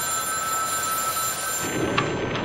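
A payphone ringing: one steady electronic ring over street noise that stops about one and a half seconds in, followed by a short click near the end.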